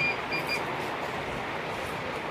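Heavy brocade fabric rustling as it is lifted and spread by hand, with a few quick high electronic beeps in the first half second.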